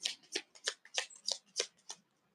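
Cards being shuffled by hand: a quick, even run of short papery strokes, about three a second.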